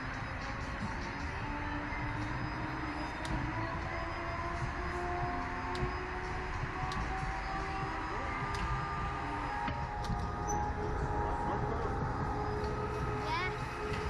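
Background music and indistinct voices over a steady low rumble, with a few faint clicks.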